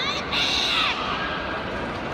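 Loud, high-pitched shouted human call, held about half a second and falling in pitch at its end, followed by a quieter long held call.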